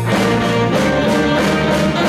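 Live band playing: saxophone over electric guitars, bass guitar, keyboard and drum kit, with regular drum hits.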